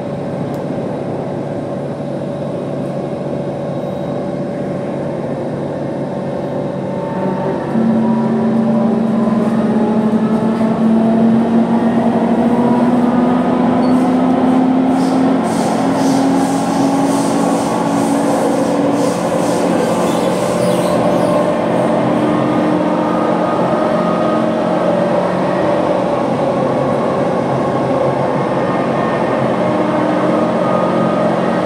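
C151 train running between stations with its Mitsubishi GTO-chopper traction whine over the rumble of wheels on rail. About eight seconds in, the sound gets louder and a whine sets in whose tones slowly rise in pitch as the train picks up speed.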